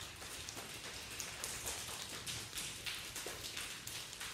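Hands rubbing and stroking along the forearms and sleeves in a self-massage, a soft, irregular rustling and brushing of skin and cloth.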